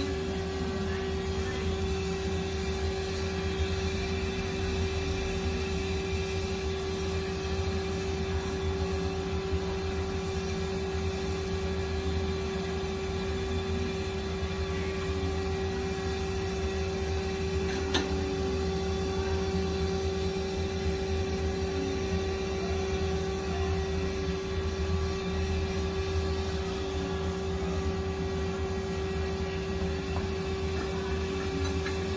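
Steady machine hum with one constant mid-low tone and a low rumble beneath it, from the idle lathe and shop equipment. A single sharp click about eighteen seconds in.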